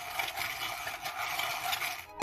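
Hand-cranked playing-card shuffler turning, its rollers feeding cards from both stacks in a steady, fast rattle that stops just after the end.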